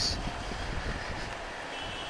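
Steady engine and road noise of a Honda CBR150R single-cylinder motorcycle riding slowly in city traffic.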